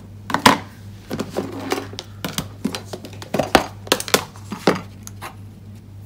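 Clear plastic tub and embossing-powder container being handled and set down on a desk: an irregular run of sharp clicks and light knocks of plastic.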